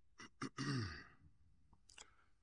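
A man's voice making a short breathy sound that falls in pitch, about half a second in, preceded by a couple of small mouth clicks.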